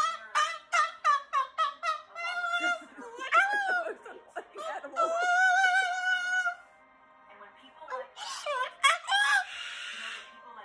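Moluccan cockatoo calling and screaming loudly: a quick run of short calls, a long held call midway, then harsh screeches near the end.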